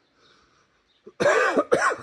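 A man coughing twice in quick succession, about a second in.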